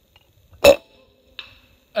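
Umarex Gauntlet PCP air rifle firing a single shot about two-thirds of a second in: a sharp crack with a brief ring. A much fainter click follows under a second later.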